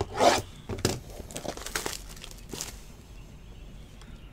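Trading cards slid and gathered by hand on a tabletop mat, and a shrink-wrapped hobby box of cards picked up. There are a few short rustling, scraping strokes in the first three seconds, the loudest at the very start, and then only faint handling.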